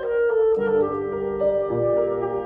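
Clarinet and grand piano playing a duet: the clarinet holds sustained notes that step to new pitches about half a second and one and a half seconds in, over the piano's accompaniment.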